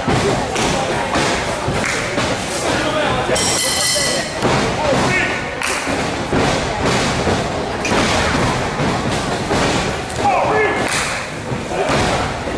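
Repeated heavy thuds of wrestlers landing and moving on a wrestling ring's mat, with voices shouting from the crowd.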